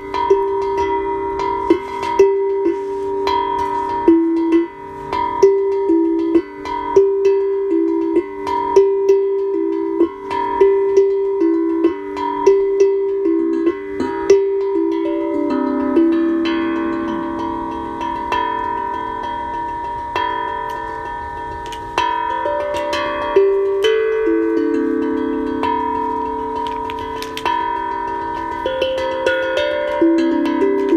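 Tongue drum played in an improvised jam: ringing struck notes in a quick repeating figure, about two strikes a second. About halfway through it slows into fewer, longer-ringing, lower notes.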